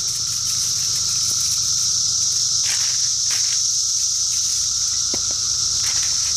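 Loud, steady chorus of cicadas: an unbroken high-pitched drone with a weaker, lower steady tone beneath it. A few faint taps come in the middle.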